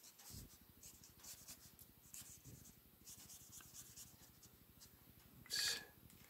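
Faint strokes of a watercolor brush pen on sketchbook paper, with soft scratchy ticks. About five and a half seconds in there is a brief, louder rustle.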